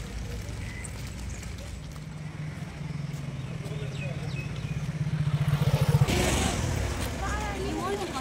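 A motor vehicle's engine drawing near and getting louder, its note pulsing faster until it peaks and passes about six seconds in, with voices in the background.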